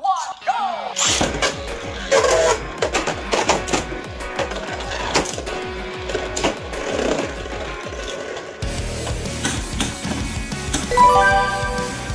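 Two Beyblade Burst spinning tops launched into a clear plastic stadium about a second in, spinning and clashing with many sharp clicks, under background music.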